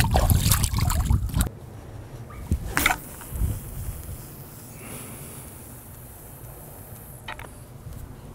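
Long-distance cast with a carp rod: a loud rushing whoosh as the rod is swung through in the first second and a half. Then a quieter steady hiss of braided line running off the reel spool, with a few short sharp clicks.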